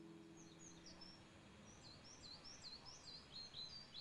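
Faint chirping of small birds: a string of quick, high, down-sweeping chirps, several a second, growing busier toward the end. Under them the last ring of a nylon-string guitar chord fades out over the first second and a half.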